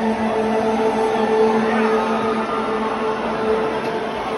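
Noise of a large arena crowd talking and calling out in the dark before a show, over a steady droning tone held on one pitch.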